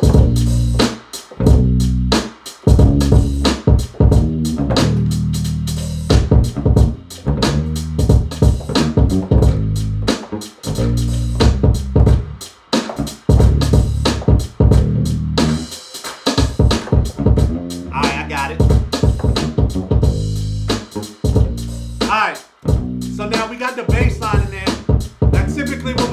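Hip-hop beat playing over studio monitors: kick drum, layered snares and hi-hats with a bass line played live on a keyboard using a Rickenbacker electric-bass sound.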